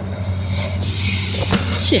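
A BMX bike rolling over rough concrete, its tyres giving a steady hiss over a steady low hum. A short shout comes at the very end.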